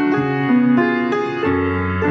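Piano music: notes changing two or three times a second over held low notes.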